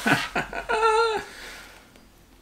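A man laughing: a few short bursts, then a high, wavering whine that lasts about half a second and stops a little past the first second.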